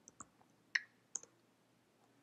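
A few faint, sharp keystrokes on a computer keyboard, irregularly spaced, as a short command is typed and entered.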